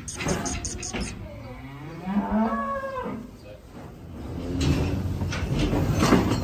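A bovine in a steel cattle crush gives one long moo, rising and then falling in pitch, after a few sharp knocks near the start.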